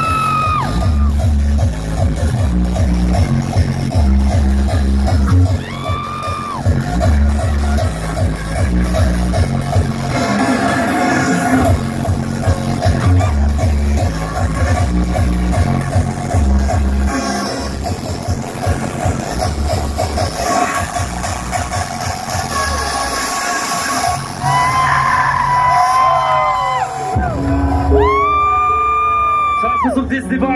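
Hardstyle DJ set playing loud over a festival sound system, with a heavy pulsing kick and bass; about three seconds before the end the bass drops out, leaving held synth notes.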